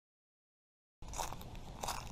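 Complete silence for about the first second, then footsteps crunching on dry leaf litter.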